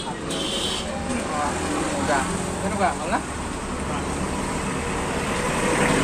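Street traffic noise with vehicles passing, getting a little louder toward the end, with faint voices in the background.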